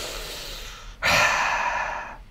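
A man's exasperated sigh: a soft intake of breath, then a louder, longer breath pushed out from about a second in, in frustration at a crashed program.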